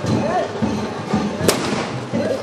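A firework set upright in a tube on the ground goes off with one sharp crack about one and a half seconds in, followed by a brief hiss as the shot launches skyward.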